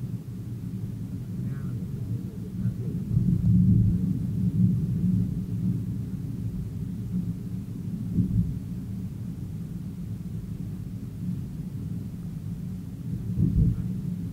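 Low rumble of a car driving on the road, heard from inside the cabin; it swells louder for a couple of seconds about three seconds in and briefly again near the end.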